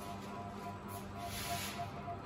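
Faint sizzling hiss of bread slices browning in a little oil in an electric frying pan, swelling briefly around the middle, with faint music underneath.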